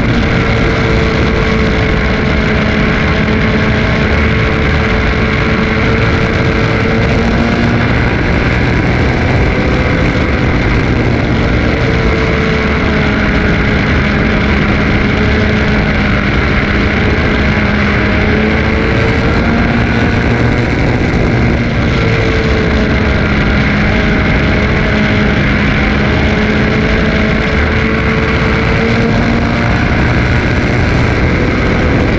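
Race car engine running hard through a heat race, heard loud from the cockpit over heavy road and wind noise. Its pitch sags and climbs again every several seconds as the car goes round the laps.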